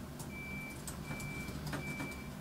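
Vehicle reversing alarm beeping, one steady high tone of about half a second repeating roughly every three-quarters of a second, over scattered clicks of computer keyboard keys being typed.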